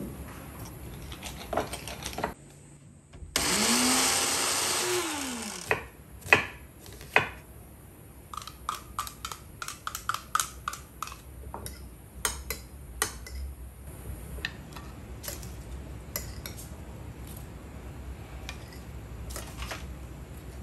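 Small food chopper runs once for about two and a half seconds, chopping basil with olive oil; its whir rises as the blades spin up and falls as they wind down. After it comes a run of light clinks and taps as a spoon scrapes the glass chopper bowl and knocks against a ceramic bowl.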